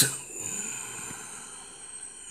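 A pause in speech: faint steady room tone and hiss, with the tail of a spoken word at the very start.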